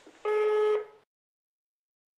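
A single steady electronic answering-machine beep, about half a second long and buzzy in tone, marking the end of a recorded message.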